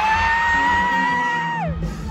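A single high voice glides up into one long held note, keeps it steady, and slides down and stops shortly before the end.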